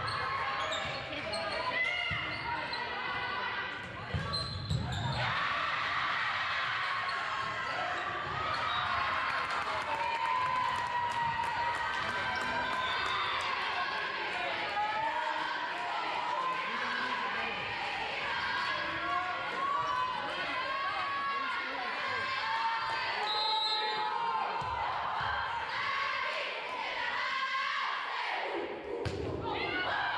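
A volleyball rally on a hardwood gym court: the ball being struck and players' shoes on the floor, with indistinct voices and calls echoing in the large hall.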